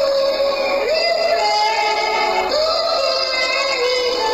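A young boy singing into a microphone over a backing track. He holds long notes, and each new phrase opens with an upward slide into the note.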